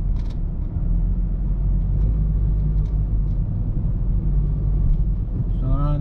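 Car engine and road rumble heard from inside the cabin as the car drives slowly, a steady low hum.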